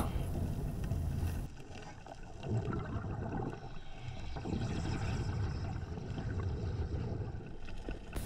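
Muffled underwater ambience heard through a camera's waterproof housing on a reef: a steady low rumble with faint scattered crackles, thinning in the highs after about a second and a half.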